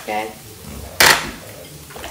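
A single sharp clank of cookware about a second in, dying away quickly.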